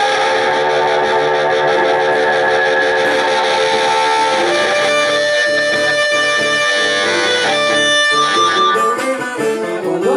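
Blues harmonica amplified through a hand-held bullet microphone and small amplifier, holding long sustained notes over strummed acoustic guitar. The harmonica falls away near the end.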